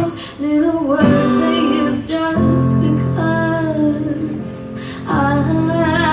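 A woman singing a slow song live over instrumental accompaniment, her notes held and gliding with vibrato above sustained chords.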